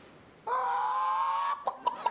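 A harmonica chord starts about half a second in and is held for about a second, with a slight rise at the start. It is followed by a couple of short, clipped notes.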